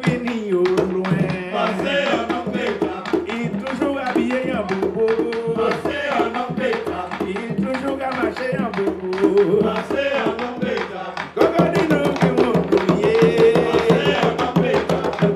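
Live bèlè music: tanbou bèlè hand drums played with rapid strokes, one drummer pressing his bare heel on the drumhead to change its pitch, under a singing voice. The music dips briefly about eleven seconds in and comes back louder.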